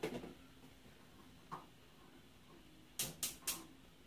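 A gas stove burner being lit: three sharp igniter clicks about a quarter second apart, about three seconds in, with low room tone around them.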